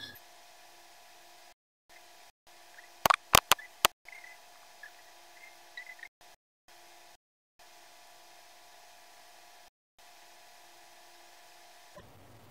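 Four sharp clicks in quick succession about three seconds in, from small earrings being handled and fastened, followed by a few faint ticks. Otherwise a faint steady hum that drops out to silence several times.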